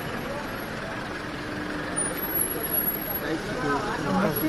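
Street traffic noise from cars and SUVs rolling slowly along a crowded street, with engines running. Voices from the crowd are mixed in, growing clearer near the end.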